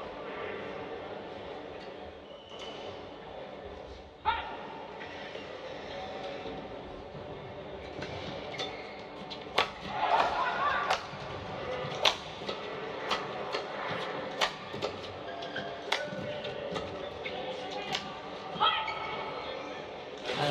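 Badminton rally: rackets strike the shuttlecock in sharp cracks, irregularly about once a second from about eight seconds in to the end. Before that there is only a steady arena background with faint voices.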